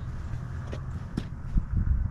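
Footsteps on ground strewn with wood chips and sawdust: a few dull steps, most of them in the second half, with one sharp click about a second in.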